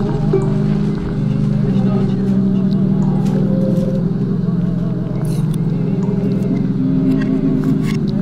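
Ambient drone music: a dense bed of low sustained tones held steady throughout, with thin warbling tones above and scattered faint clicks.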